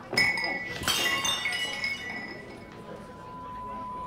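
Glassware clinking twice, about a quarter second and a second in, each strike ringing on and fading. Near the end a single steady high tone comes in and slowly grows louder, with a low rumble building under it.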